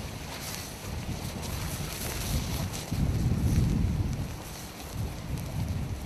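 Wind buffeting the microphone, swelling about two to three seconds in, over the hiss of a wheeled fire extinguisher's hose spraying onto smouldering tyres.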